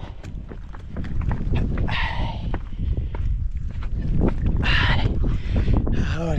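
Wind buffeting an action camera's microphone in a steady low rumble, with scattered clicks of footsteps or gear on rock. Two short, loud breaths, about two seconds in and again near the end, from a runner panting after a hard climb.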